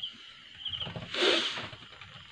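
Insect chirping in short trills of rapid pulses that repeat every second or so. A louder, brief rushing noise comes about a second in.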